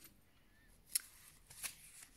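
Tarot cards being handled between one card and the next: two short, faint crisp ticks of card stock, a little under a second apart.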